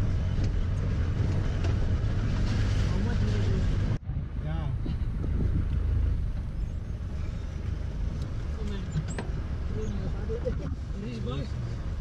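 Steady low rumble of a Tata Sumo's engine and its tyres on a rough gravel mountain track, heard from inside the cabin. The sound breaks off abruptly about four seconds in, then the rumble resumes a little quieter.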